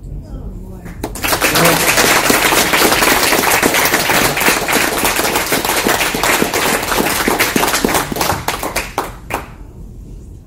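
Audience applauding: a burst of many hands clapping that starts about a second in, then thins to a few scattered claps and stops shortly before the end.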